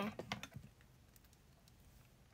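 A few faint short clicks about half a second in, then near silence: room tone.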